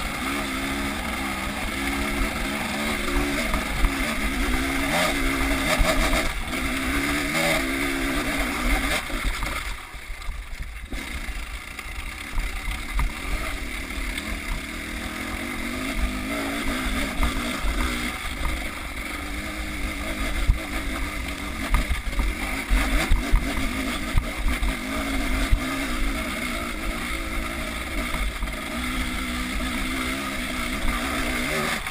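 Husqvarna two-stroke enduro dirt bike engine revving up and down under changing throttle while riding, with wind buffeting the microphone. The engine drops back briefly about ten seconds in, then picks up again.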